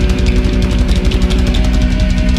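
Heavy punk-metal song: distorted electric guitars over fast, steady drumming.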